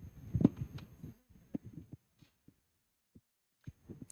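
Scattered soft low thumps and knocks of a handheld microphone being handled and carried, busiest in the first two seconds, then a few faint ticks.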